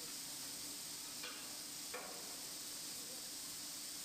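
Faint, steady hiss of factory-floor ambience with a low hum from tyre-building machinery, and a couple of faint clicks about a second and two seconds in.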